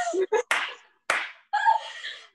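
Women laughing together over a video call, with two sharp bursts about half a second and a second in.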